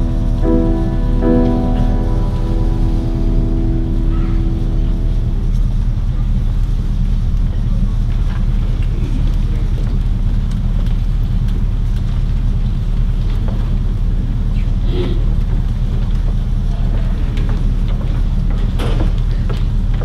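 A mixed choir holds a final chord that dies away about five seconds in. A steady low rumble follows, with a few faint clicks.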